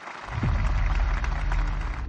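Crowd applauding: a dense, even clatter of clapping that comes up within the first half-second and holds steady, over a low hum.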